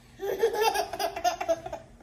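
Baby laughing: a run of high-pitched laughs, starting a moment in and lasting about a second and a half.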